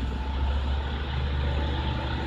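Toyota Fortuner's diesel engine idling with a steady low rumble, running on regular diesel with no additive in it yet.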